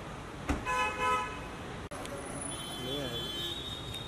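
A car's rear door is shut with a single thump, followed at once by a short car-horn toot lasting about half a second.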